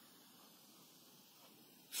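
Near silence: faint room tone and microphone hiss in a pause between spoken phrases.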